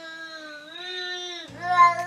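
A long, drawn-out cat meow, wavering slightly in pitch. About a second and a half in, a second, louder cry starts over a low steady hum.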